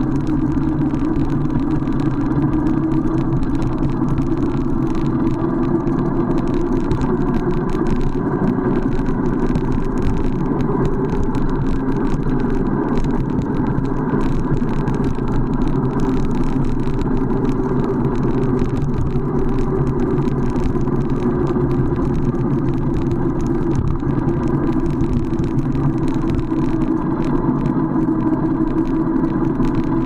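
Dull, steady road noise from a fatbike rolling downhill on asphalt: its wide tyres humming on the road, mixed with wind rushing over the handlebar-mounted action camera's microphone.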